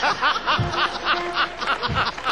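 Studio audience and judges laughing at a comedian's punchline, a quick run of ha-ha pulses, with a held musical tone underneath.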